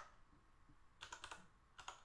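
Faint keystrokes on a computer keyboard: a quick run of key presses about a second in, then two more near the end.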